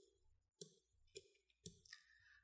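Faint, separate clicks from a computer mouse and keyboard, four or five of them about half a second apart, against near silence.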